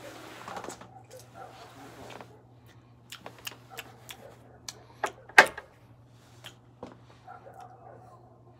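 A person smoking a cigar: a long breathy exhale of smoke, then a run of sharp clicks and lip smacks from puffing, the loudest about five seconds in, over a steady low hum.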